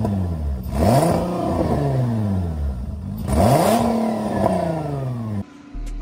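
Nissan VQ35 V6 with custom turbo exhaust manifolds being revved: two free-revving blips, each climbing quickly and falling back. The tail of an earlier rev opens it, and the sound breaks off briefly near the end. The merge was rebuilt to sound like a traditional VQ.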